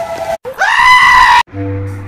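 A loud scream sound effect that rises in pitch, is held for about a second and cuts off sharply. Slow, low bowed-string music comes in right after it.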